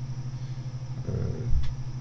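Steady low electrical buzzing hum, with a short low thump about one and a half seconds in.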